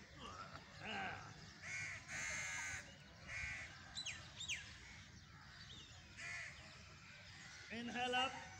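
Crows cawing over open ground, a string of harsh calls a second or so apart, one of them drawn out about two seconds in. A couple of quick falling whistles from another bird come about four seconds in.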